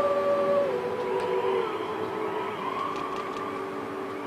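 A small group of voices singing a slow song in harmony, holding long notes. The melody steps down in pitch a little under a second in.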